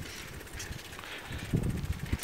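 Low rumble of wind on the microphone and bicycle riding noise, with a few louder low thumps near the end.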